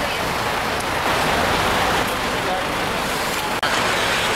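Steady city street noise: road traffic with the indistinct voices of people standing about, broken by a sudden brief dropout near the end.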